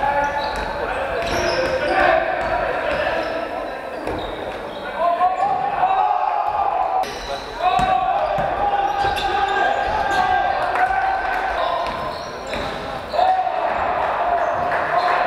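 Sounds of a basketball game in a large, echoing gym: players' voices calling and the ball bouncing on the wooden floor.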